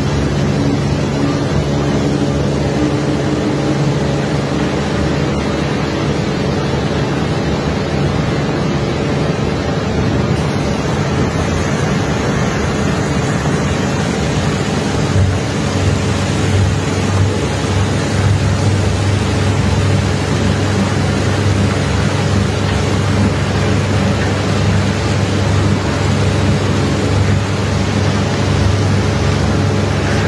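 Heavy engine running steadily under a constant rushing noise, while crushed iron ore is unloaded from a barge. A deeper hum joins about halfway through.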